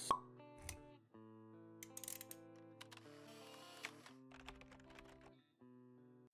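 Quiet logo-intro jingle: soft held musical notes, with a sharp pop right at the start and a few light clicks scattered through.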